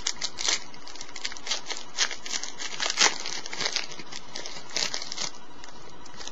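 Wrapper of a Panini football card pack being torn open and crinkled by hand: a run of sharp, irregular crackles, the loudest about three seconds in.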